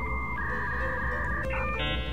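Electronic music: held synthesizer notes over a steady low drone, changing to a different set of higher notes about three-quarters of the way through.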